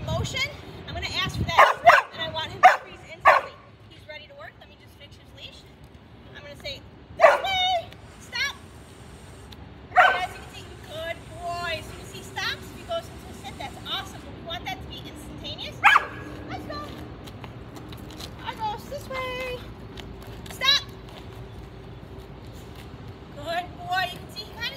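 A dog barking: a quick run of several sharp barks in the first few seconds, then single barks spaced several seconds apart.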